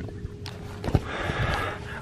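Handling noise from a camera being turned around in the hand: a couple of short knocks, then soft rustling over a faint room hum.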